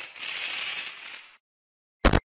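Glitch-style static sound effect: a crackling hiss that fades and cuts off about a second and a half in.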